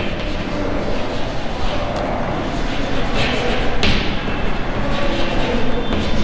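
Chalk writing on a blackboard: short scratching and tapping strokes as a word is written. Under it runs a steady rumbling room noise.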